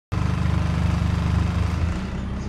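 A bus engine running with a steady, low rhythmic throb, heard from inside the passenger cabin.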